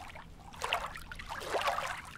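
Water lapping and splashing, coming in gentle swells about once a second.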